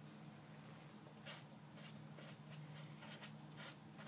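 Sharpie marker writing on paper: a few faint, short strokes as a bracketed expression is drawn, over a faint steady low hum.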